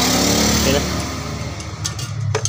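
An engine running steadily, heard as a low hum, with a hiss that is strongest in the first second and then eases.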